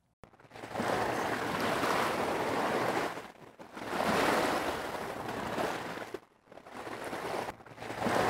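Recorded ocean surf washing onto a beach, in three swells that build and ebb, played through a Tape Drive distortion preset that adds hiss and breakup at the louder moments.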